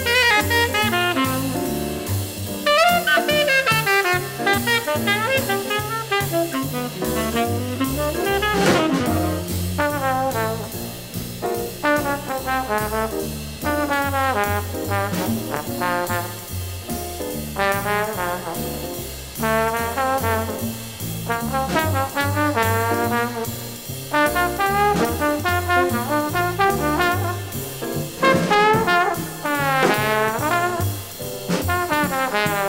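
Small-group jazz recording: a trombone playing runs of quick notes over a walking bass line that steps about twice a second.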